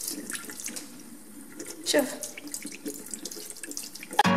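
Water running from a bathroom sink tap and splashing irregularly over hands as a small tortoise is rinsed under the stream.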